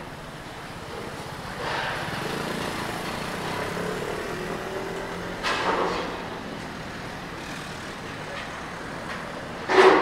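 Street ambience with a vehicle passing by, its engine a low drone for a few seconds. Then come two short sharp knocks: one about five and a half seconds in and a louder one near the end.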